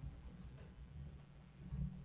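Quiet room tone with a faint, uneven low rumble.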